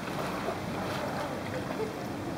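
Steady water and wind noise around a sea canoe on the water, with water lapping against the hull.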